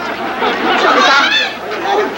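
Several voices talking over one another, with one voice rising high about a second in.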